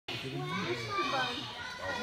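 Overlapping children's voices chattering and calling across a large gym hall.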